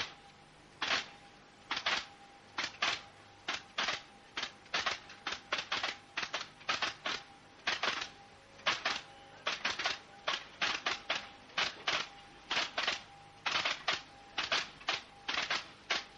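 An irregular run of short, sharp clicks, about two to four a second, over a faint steady high tone.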